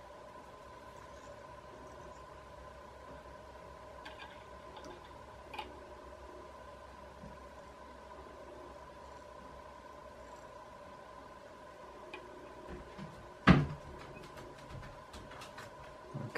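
Quiet room with a steady faint electrical hum, a few small ticks from handling at the tying bench, and one sharp knock about three-quarters of the way through.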